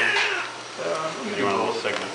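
Newborn baby crying in two short cries, just delivered by caesarean section.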